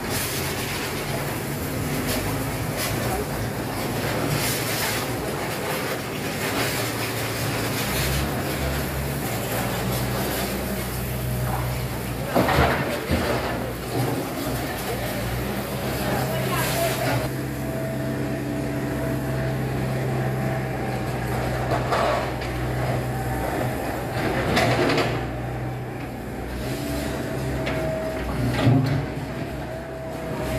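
Diesel engines of a mini excavator and a three-wheeled công nông farm truck running steadily, with several loud thuds and clatters as scoops of soil and broken brick drop into the truck's bed.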